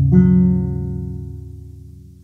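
Violone (large bass viol) string plucked once just after the start, a low note ringing and slowly dying away.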